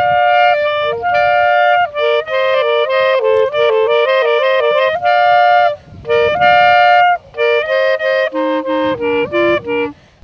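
Two clarinets playing a duet in two-part harmony, a melody in phrases of held and moving notes with short breaks between them; the music stops near the end.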